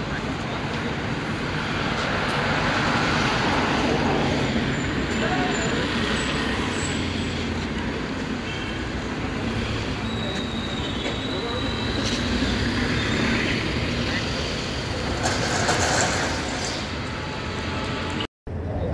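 Car engines running as cars creep past on a road, over a steady traffic hum, with indistinct voices of people nearby.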